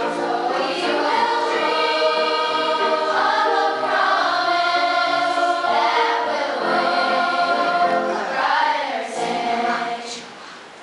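Large children's school choir singing a song in long held notes that swell and shift in pitch every second or two.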